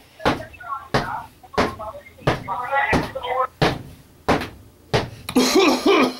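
Footsteps climbing a flight of stairs: a steady run of heavy thumps, about one and a half a second, with faint voice sounds between steps and a voice starting near the end.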